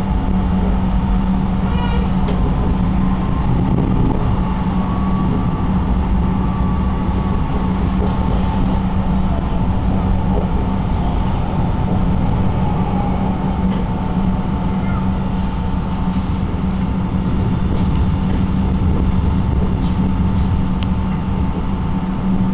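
Inside a moving city tram: the steady running noise of the car on its rails, with a constant low motor hum under it.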